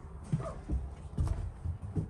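Footsteps on the bare floor of a bus's upper deck, a series of soft, uneven thumps as a person walks forward along the aisle.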